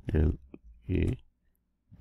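A man's voice spelling out letters one at a time, two short syllables about a second apart, with a single faint computer-key click between them as the word is typed.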